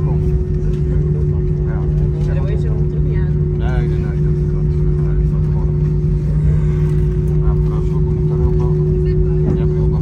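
Steady cabin rumble inside an Airbus A320 rolling out along the runway just after touchdown, with a constant low hum and a steady higher tone running through it. Faint passenger voices over it.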